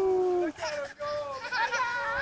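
A toddler's long, steady-pitched wordless call that ends about half a second in, followed by shorter calls that rise and fall in pitch as the children chase bubbles.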